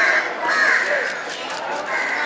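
Crows cawing: two calls in the first second and another beginning near the end.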